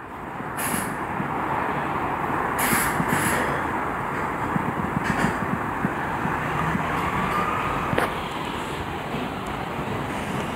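Steady rush of traffic noise from a nearby highway, swelling in the first second and holding. A faint rising whine comes about seven seconds in, and a sharp click about eight seconds in.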